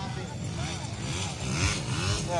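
150 cc motocross dirt bikes running on the track, their engines a steady rumble with a rise in noise near the end, under the voices of nearby spectators.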